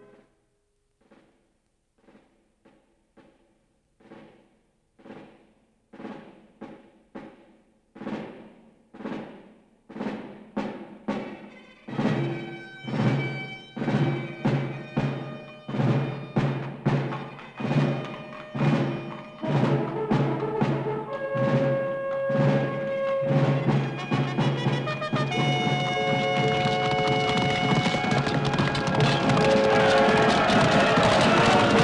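Orchestral film score: soft, repeated struck beats that grow steadily louder, joined about twelve seconds in by held orchestral notes, building in a long crescendo to a loud, full sound.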